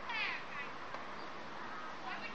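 A short, high-pitched cry near the start, followed by steady outdoor background noise.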